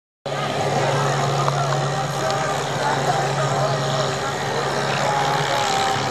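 Tractor engine running steadily under heavy load as it pulls a weight-transfer sled, beginning abruptly just after a brief gap at an edit.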